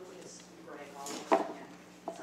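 Faint talking in the background and one sharp knock a little over a second in: a spatula knocking against the peanut butter jar as peanut butter is scooped out.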